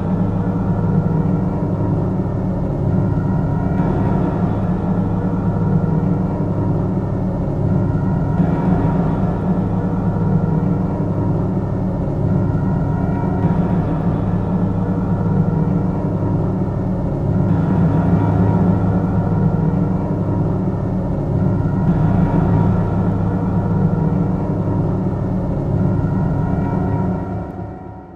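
Synthwave music: a thick, steady low synth bass under layered synths, with the upper layers changing about every four seconds.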